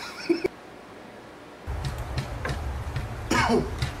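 A man coughing and laughing, stifled behind his hand just after a sip of water, with one sharp burst at the very start. About halfway through, a low steady hum sets in, with short voice sounds over it.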